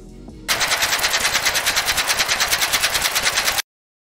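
Wind flutter from skydiving: a loud, rapid, even rattle of about ten pulses a second. It starts about half a second in and cuts off suddenly shortly before the end.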